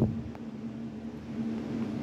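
A steady low hum with a constant tone under it, from background noise.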